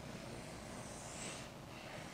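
Dry-erase marker drawing a long curved stroke across a whiteboard: a faint high hiss, loudest about a second in, over low room hum.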